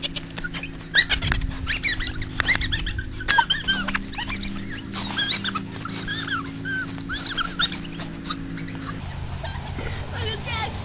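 A young boy laughing and squealing in short, high-pitched whoops, over a steady low held chord that cuts off about nine seconds in.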